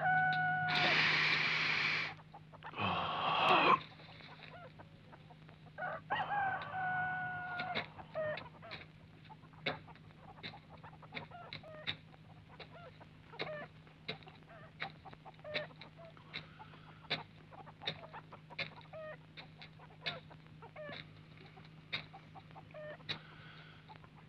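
Rooster crowing, several long calls in the first eight seconds, followed by chickens clucking in short, scattered calls over a steady low hum.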